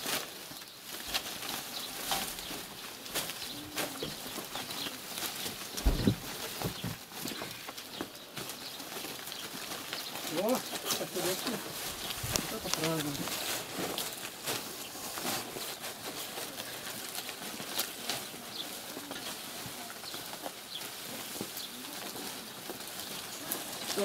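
Dry peeled tree-bark strips rustling and crackling as armfuls are piled by hand onto a cart, with a heavy thump about six seconds in. Faint voices sound now and then behind it.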